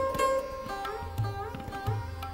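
Sarod playing plucked notes, several sliding smoothly in pitch, over tabla accompaniment in Hindustani classical music. The deep bass drum strokes bend upward in pitch about halfway through and again near the end.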